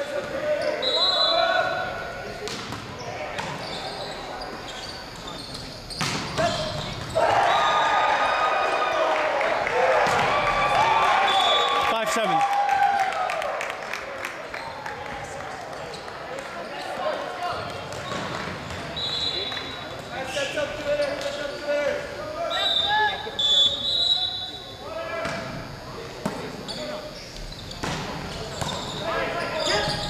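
Indoor volleyball rally on a hardwood gym floor: ball contacts and thuds, short sneaker squeaks, and players shouting and calling to each other, loudest between about 7 and 13 seconds in, all echoing in the large hall.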